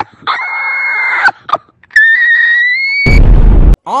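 A person screaming in a recorded voice message: a held, high-pitched scream lasting about a second, then a second scream that rises slightly. Near the end comes a short, loud, distorted blast of noise that cuts off suddenly.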